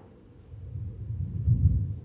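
A deep, low rumble that swells about half a second in, is loudest about a second and a half in, then drops away.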